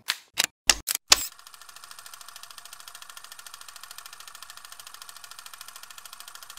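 A few sharp mechanical clicks, then a fast, even mechanical clatter that runs on steadily, a sound effect under a closing title card.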